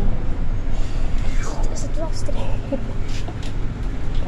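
Cabin sound of a Solaris Urbino IV 18 articulated city bus on the move: a steady low rumble of drivetrain and road, with a few light rattles.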